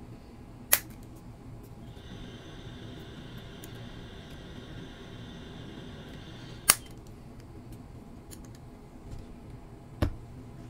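Two sharp plastic snaps about six seconds apart, as suspension links are pressed onto the pivot balls of a small RC car's rear pod. Light handling ticks and a faint steady high whine run between the snaps.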